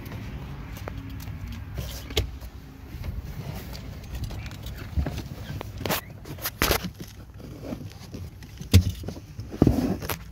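Car floor carpet being pulled and torn up from an Acura Integra's floor: irregular rustling and scraping with scattered knocks and clicks, the sharpest thumps near the end.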